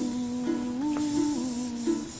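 Background music: a slow melody of long held notes that step up and then back down in pitch.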